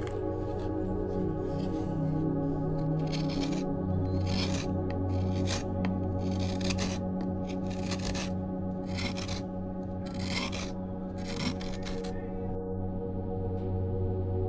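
A hand carving tool cutting and scraping wood, in a series of about ten short strokes roughly a second apart, over steady ambient background music.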